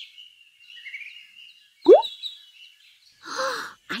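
Cartoon sound effects over faint birdsong: a quick, loud rising whoop about two seconds in, then a short burst of noise shortly before the end.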